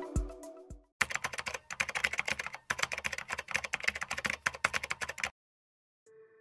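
A short musical jingle dies away in the first second, then rapid computer-keyboard typing clatters for about four seconds, with a brief break about halfway, and stops suddenly.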